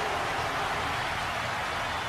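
A steady, even hiss with no distinct hits, tones or voices.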